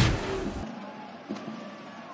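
A broadcast whoosh transition effect, loudest right at the start and dying away within about half a second. It is followed by ice hockey arena sound with a few sharp clicks from play on the ice.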